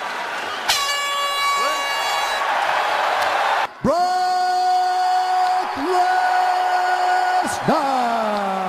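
Air horn blasts over arena crowd noise, the horn that ends the fight. A short blast about a second in is followed, after a cut, by a long steady blast of about three and a half seconds, and another starts near the end and falls in pitch.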